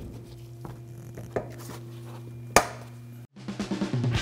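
A plastic push clip being pressed into a car's underbody splash shield: a few light clicks, then a sharp snap about two and a half seconds in as it seats. After a brief dropout near the end, music with a drum beat starts.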